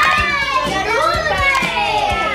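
Several children calling out loudly together, an excited chorus of young voices overlapping one another.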